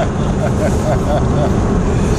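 Steady low road and engine rumble inside a moving car's cabin, with a quiet voice faintly underneath.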